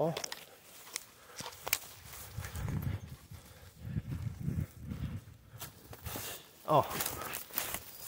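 Footsteps crunching through dry fallen leaves and twigs on a forest floor, uneven and irregular, with a few sharp cracks.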